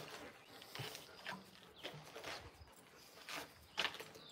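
Alaskan Malamute puppies moving about at close range: a handful of faint, short, scattered noises, the loudest near the end.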